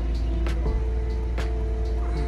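Background music: held keyboard chords that change about two-thirds of a second in, over heavy bass, with a few sharp percussion hits.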